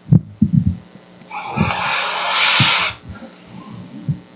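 Handling noise as the webcam or laptop is moved: several soft low thumps, with a rustling noise lasting about a second and a half in the middle.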